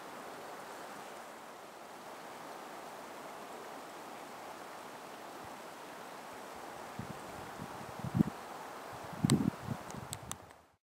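Steady outdoor background hiss with no distinct source. A few soft thumps come in the last three seconds, with a sharp click about nine seconds in.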